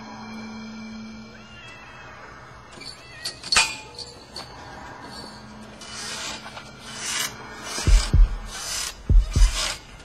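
Horror-film soundtrack: a faint low drone and scraping noises, then from near the end a deep heartbeat-like thudding, the beats coming in pairs.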